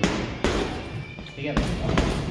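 Punches landing on boxing focus pads: three sharp smacks, one at the start, one about half a second in and one about a second and a half in.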